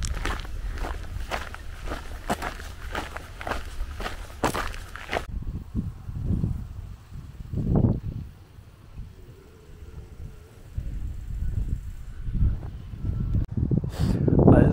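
Footsteps of a person walking on a path, about three steps a second, which stop abruptly about five seconds in. After that there is only low, uneven rumbling.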